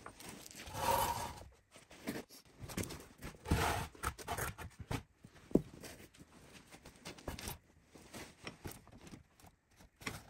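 Steel floor jack being worked by its long handle under the car: irregular scraping and rustling, with scattered clicks and one sharp metallic clink about five and a half seconds in.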